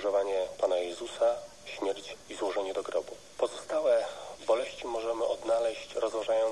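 Speech only: a person talking steadily, with a thin sound that has little bass.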